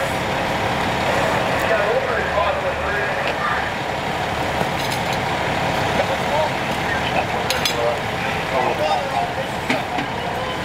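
Fire truck engine running steadily, with indistinct voices of people nearby and a few sharp clicks and clanks of equipment about halfway through.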